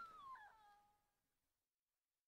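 Near silence between tracks: the last falling, voice-like glide of the song fades out within the first second, leaving a silent gap.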